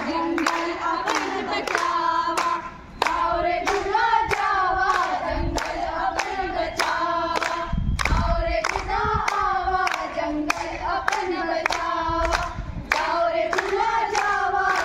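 A group of young women singing a song together, clapping hands in time about twice a second, with a brief break in the singing about three seconds in.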